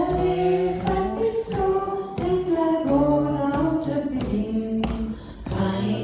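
A woman singing a slow song into a microphone, holding long notes and sliding between them.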